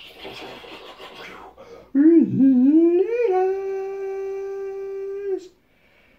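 A man's voice making a long vocal howl: it wavers and rises for about a second, then holds one steady note for about two seconds before cutting off. Before it there is a faint hissing rustle.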